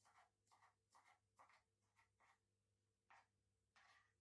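Faint kitchen knife cutting on a plastic chopping board: a run of short strokes, two or three a second, a brief pause, then two more near the end.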